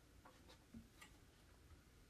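Near silence: room tone with a few faint, evenly spaced ticks, about four a second, in the first half.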